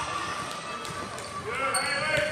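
Spectators' and players' voices echoing in a gymnasium, with a basketball bouncing on the hardwood court. A short high squeak sounds near the end.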